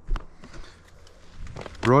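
A man's voice at the start and again near the end. Between, a faint low rumble of a mountain bike rolling slowly onto a gravel trail.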